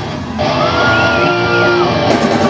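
Live rock band playing: electric guitars and drums, with one high note held for about a second in the middle.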